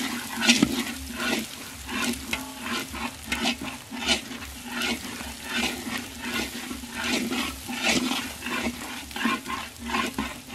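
Food sizzling as it is stir-fried in a pan, with a spatula scraping through it about twice a second.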